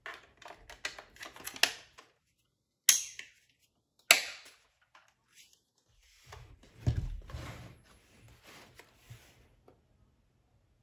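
Hard plastic clicks and rattles from handling a Brother RJ4030Ai mobile receipt printer, with two sharp snaps about three and four seconds in. Then a low thud and rubbing as the printer is set on the table and handled.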